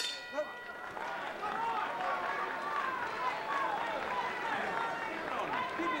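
Boxing ring bell struck once to end the round, its several tones ringing on and fading over a second or two. A crowd's voices and hubbub follow.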